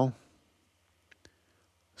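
Two faint computer mouse clicks in quick succession about a second in, opening a software menu, over quiet room tone.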